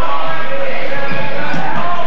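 A basketball being dribbled on a hardwood gym floor, with loud voices from the crowd over it.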